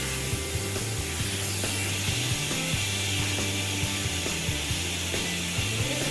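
Electric dog-grooming clippers running with a steady mechanical buzz, over background music.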